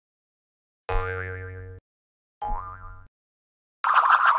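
Cartoon sound effects: two short pitched tones with a wavering, wobbling pitch about a second and a half apart, then just before the end a loud, rapidly rattling whirr starts.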